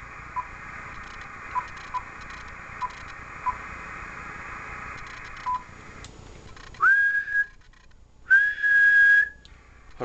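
Icom IC-7000 receiver hiss, with short key beeps as a frequency is entered. Then comes a person's whistle into the microphone, one that rises and then holds, followed by a second steady whistle about a second long. On upper sideband the whistle is what drives the transmitter to its full 100 watts output. Between the whistles the receiver hiss drops out while the radio transmits.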